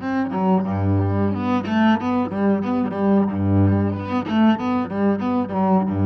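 Solo cello played with the bow: a quick melody of short notes over a low bass note that returns every few seconds.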